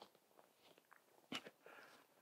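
Near silence with a few faint footsteps on the wet, grassy mud track, about a second and a half in.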